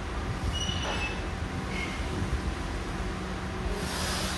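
Smith machine bar sliding in its guide rails during an incline bench press, with a few brief high squeaks in the first two seconds over a steady low gym hum. There is a short hiss near the end.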